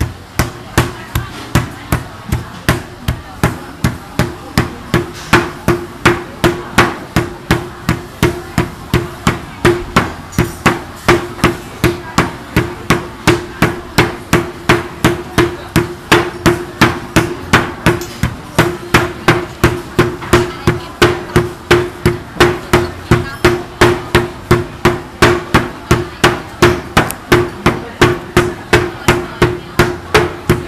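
Two heavy wooden mallets pounding a slab of peanut brittle on a wooden board in turn, an even run of sharp strikes about three a second. This is the pounding of khanom tup tap, which flattens and breaks up the warm brittle into a thin sheet and gives the sweet its name.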